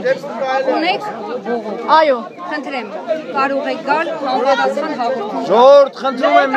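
Speech only: several people talking over one another at close range in a crowd.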